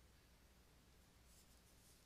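Near silence: a stylus writing on a drawing tablet, heard only as faint scratching.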